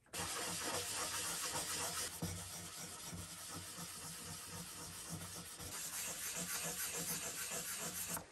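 Fine-grit sandpaper on a small block rubbed rapidly back and forth over a filled patch in a Gibson J45's spruce top, a steady scrubbing that starts abruptly and grows louder again near the end; the filled repair is being sanded flush with the top.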